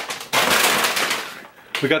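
A plastic bag of frozen fruit being handled, a crackly crinkling rustle lasting about a second; a man's voice starts near the end.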